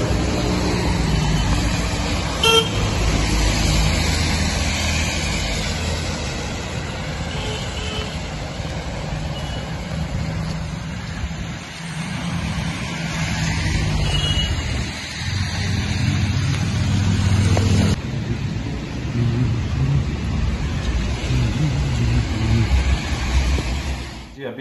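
Road traffic on a wet street: cars passing with a steady rumble and tyre hiss, and a short car-horn toot about two and a half seconds in.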